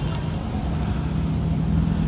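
Steady low rumble of an idling engine, with a constant low hum and no change in pitch.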